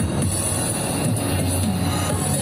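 Amplified electronic backing-track music with a steady bass line, played at a street performance.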